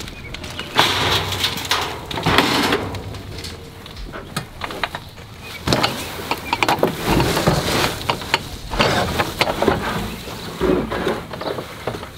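A loaded wheelbarrow pushed up a metal mesh trailer ramp and across a wooden trailer deck, giving several spells of clatter and knocks mixed with the rustle of uprooted spruce shrubs; near the end the barrow is tipped to dump its load.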